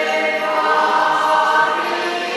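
A choir singing, many voices holding long, steady notes together.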